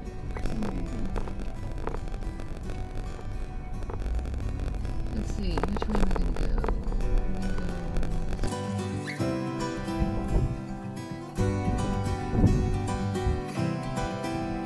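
Wind rumbling on the microphone with a few brief snatches of a voice. About eight seconds in, soft acoustic guitar music takes over.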